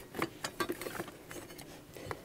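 Faint, scattered small clicks and knocks of someone rummaging through a container of tools and parts by hand.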